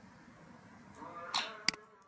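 Faint room noise, then a short, faint vocal sound from the speaker and, near the end, one sharp click of a computer mouse as a code block is dropped into place.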